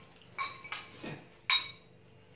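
Metal forks clinking against bowls while noodles are eaten: a few short, sharp clinks, the loudest about a second and a half in.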